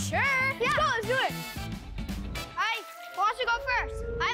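Children talking and exclaiming over background music, in two short bursts of speech: one at the start and one in the second half.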